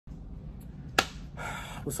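A single sharp click or snap about a second in, followed by a man's voice starting to speak at the very end.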